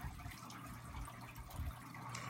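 Faint, steady background hiss with a low rumble in a short pause between voices; no distinct event stands out.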